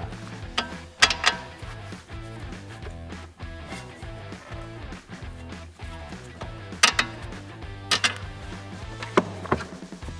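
Background music with a few sharp metal knocks and clinks, one about a second in and three near the end, as an anti-roll bar drop link is worked loose from a car's front suspension strut.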